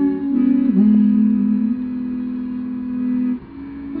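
Piano accordion playing sustained chords with no singing over them. It changes chord twice within the first second, then holds one long chord that cuts off sharply about three and a half seconds in, and new notes begin near the end.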